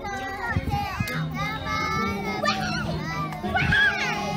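A group of young children's voices together, over music with a steady low bass line; one voice rises loud and high near the end.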